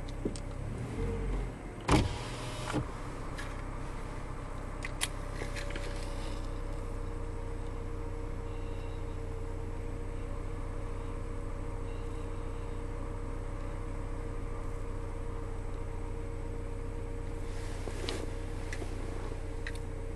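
Truck engine idling as it warms up, heard from inside the cab as a steady hum with a faint held tone. A sharp knock comes about two seconds in, with a few small clicks a few seconds later.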